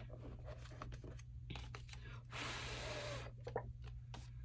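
A paper bill and card being slid into a clear plastic binder pocket, a rustle of about a second past the middle with lighter paper-handling sounds around it. A low steady hum sits underneath.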